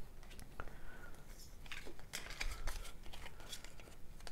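Light rustling and small clicks of Pokémon trading cards and a plastic card sleeve being handled and laid down on a countertop.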